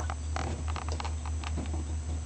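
A steady low electrical hum, with faint scattered clicks and a short breathy hiss about a third of a second in: mouth and breath sounds between a man's slow, halting words.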